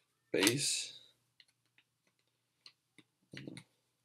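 A foil trading-card pack wrapper crinkles loudly about half a second in as it is torn open. Scattered small clicks follow as the cards are slid out and handled.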